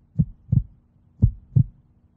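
Heartbeat sound effect: a pair of low thumps, lub-dub, about once a second, two beats in all, over a faint steady hum. It is a suspense cue played under a decision countdown.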